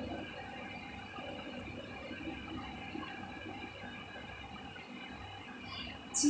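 Quiet room tone: a faint, steady hum and hiss with no distinct event standing out.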